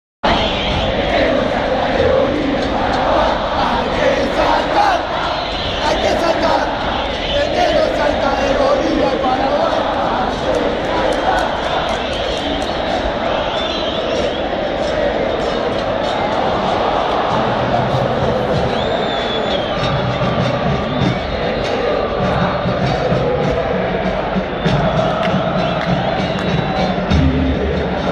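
Large football stadium crowd of River Plate supporters singing a terrace chant in unison, loud and unbroken. Low thumping joins in during the second half.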